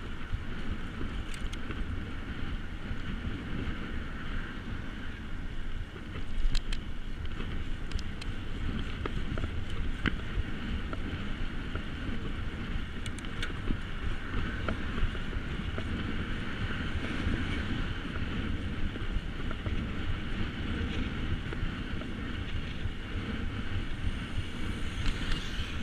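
Wind buffeting an action camera's microphone on a moving bicycle, over a steady low rumble of riding along asphalt. A few sharp clicks sound through it, and the rush briefly grows louder about six seconds in.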